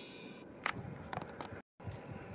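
Faint outdoor background noise with a few short soft clicks, broken by a moment of total silence about three-quarters of the way through.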